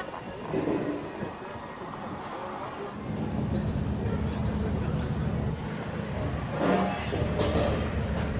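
A low, steady motor hum comes in about three seconds in, with a faint voice in the background near the end.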